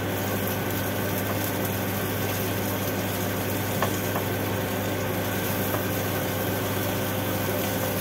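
Steady low machinery hum with an even hiss over it and one short click about four seconds in.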